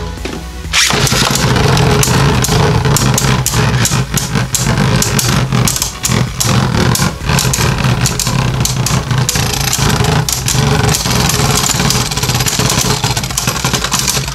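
Two Beyblade Burst Turbo spinning tops whirring on a plastic stadium floor, with many sharp clicks as they knock against each other.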